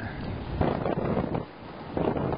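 Wind buffeting the camera's microphone: an uneven rushing noise that drops a little about one and a half seconds in.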